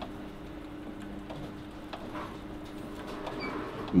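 Tabletop continuous band sealer running with a steady low hum as a tea packet feeds through its rollers, with a few faint clicks.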